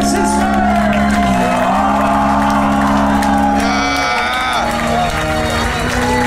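Live power metal band playing long held chords over sustained bass, with a wavering melody line on top, while the crowd cheers and shouts.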